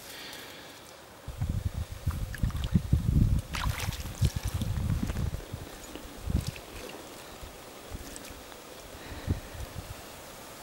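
Water sloshing and splashing in a shallow, muddy pool as someone wades and works with his hands in it, with choppy low rumbles for several seconds, then quieter with a few small splashes.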